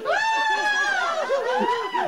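A person's high, drawn-out vocal note that holds and then slides down in pitch, followed by a second shorter note that rises and falls, with people laughing underneath.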